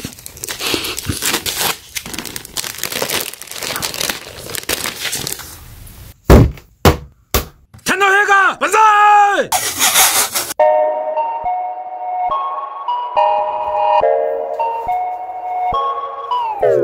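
Crinkling and crackling of packaging as a laptop is handled out of its box and foam inserts, followed by a few sharp knocks and a brief snatch of voice. About ten seconds in, background music with held synth notes starts.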